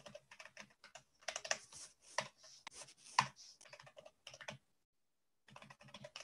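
Computer keyboard keys tapped in quick, irregular runs, with a pause of about a second near the end.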